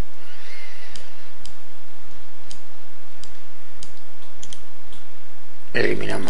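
Computer mouse clicking: a series of short, separate clicks, about one or two a second, as table cells are selected and the right-click menu is opened, over a steady background hiss.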